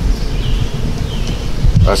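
Low rumble of wind on the microphone outdoors, with a faint insect buzz twice, just before a man says "uh" at the end.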